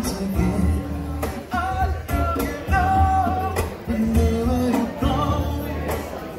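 Live acoustic duo: acoustic-electric guitar strummed over hand-played congas, with the conga player singing held notes into the microphone.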